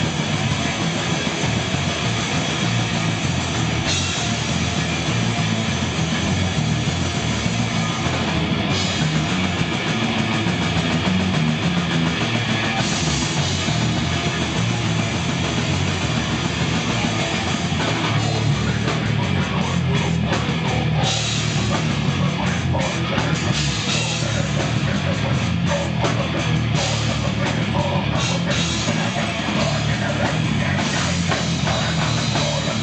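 Brutal death metal band playing live at full volume: heavily distorted guitar and bass over a fast drum kit, a dense and unbroken wall of sound. In the second half the cymbal wash breaks up into short, choppy stops.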